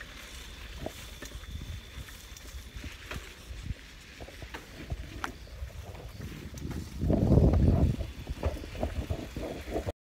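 Wind rumble and scattered knocks and rattles on a moving camera's microphone, with a loud gust about seven seconds in that lasts about a second. A faint steady high whine sounds over the first few seconds.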